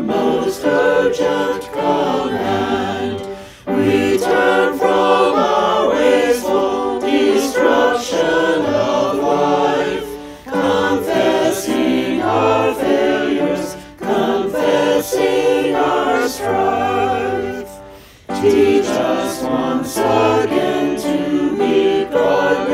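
A choir singing a hymn with lyrics about caring for creation, in phrases broken by short pauses about every four seconds.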